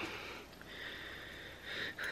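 A faint breath drawn in through the nose, a soft sniff lasting about a second.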